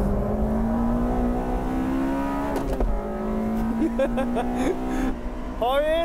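Honda DOHC inline-four race car engine heard from inside the cabin, pulling hard under acceleration with its pitch climbing steadily. The pitch drops sharply about three seconds in, then climbs slowly again.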